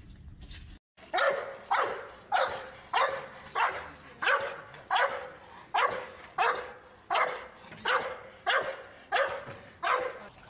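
A pit bull barking over and over in a steady rhythm, about three barks every two seconds.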